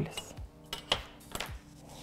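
A few light clicks and taps from a scoring stylus and ruler on cardstock over a cutting mat, as the scored strip is handled, with quiet background music underneath.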